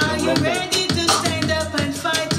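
A dub-reggae track playing, with a low, heavy, rumbling bass, quick even hi-hat-like percussion ticks and a pitched vocal line that glides up and down over the beat.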